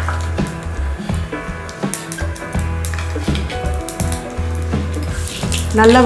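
Mustard and cumin seeds sizzling and popping in hot oil in a small steel pan, a stage of tempering (tadka), with scattered sharp crackles. Background music with a steady bass plays throughout.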